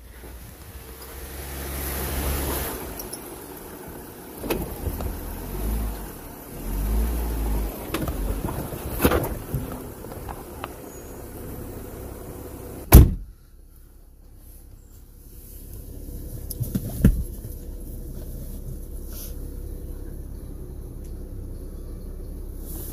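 Jeep Wrangler engine working the vehicle over rock in short bursts of throttle, with sharp knocks as it bumps over the rock. The loudest knock comes about two-thirds of the way in, after which the engine runs on steadily and more quietly, with one more knock a few seconds later.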